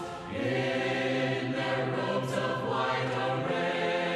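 Choir singing long, held chords of closing music; a brief dip just after the start gives way to a new chord.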